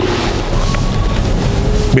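Microphone handling noise: a loud, steady rushing rumble from the hand-held mic, with a man's speech faint and buried beneath it. It cuts off at the end.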